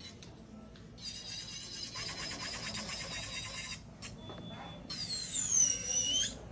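Electric nail file with a buffing bit running on acrylic nails, giving a high whine from about a second in. Near the end a louder whine falls and then rises again in pitch.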